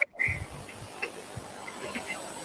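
Faint background noise with a few small, scattered clicks, a short low rumble just after a brief dropout at the start, and a thin steady high-pitched whine underneath.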